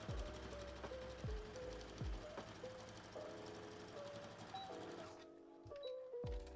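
Lo-fi background music with a melody and a deep kick drum. Under it, a Brother XR3340 sewing machine stitches a seam through quilted fabric, and its stitching stops about five seconds in.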